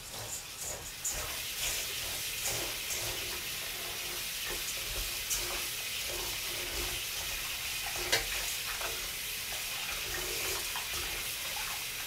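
Kitchen tap running into a stainless steel bowl of rice in a steel sink, a steady hiss of water, while hands swish and rub the wet grains with small scratchy ticks. A sharper knock comes about eight seconds in.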